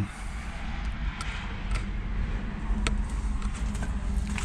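Footsteps and a few sharp clicks and crunches as someone walks over a debris-strewn floor, over a steady low rumble.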